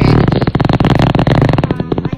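A long, buzzy raspberry, a fart-like jeer made of rapid, even pulses.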